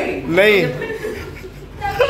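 A man laughing and exclaiming: one voiced cry that rises and falls in pitch about half a second in, then quieter.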